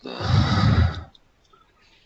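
A loud exhale into a close microphone, about a second long, a breathy rush with heavy low rumble from the breath hitting the mic, cut off sharply and followed by quiet.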